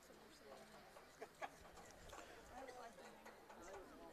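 Near silence: faint ballfield ambience with distant voices and two small clicks a little over a second in.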